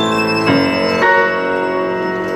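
Violin and grand piano playing a slow, sustained passage: the violin holds its line while new piano chords strike about half a second and a second in and ring on.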